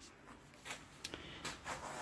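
Quiet room tone in a small room, with a few faint clicks and rustles.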